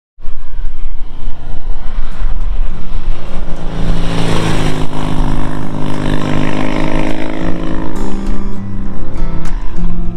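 A 1971 Triumph Trophy TR6C's 650 cc parallel-twin engine as the motorcycle rides past at speed, loudest around the middle and dropping in pitch as it goes by and away. Guitar music comes in near the end.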